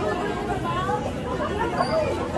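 Indistinct chatter of many people talking at once, a steady crowd babble with no clear words.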